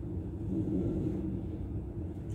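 Passenger train running at speed, heard from inside the carriage: a steady low rumble that swells slightly about half a second in.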